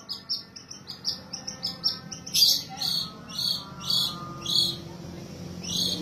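Long-tailed shrike (cendet) singing, in the rich, varied song that keepers prize in a 'gacor' bird. It opens with a quick run of short high notes, then gives louder, harsher notes about two a second.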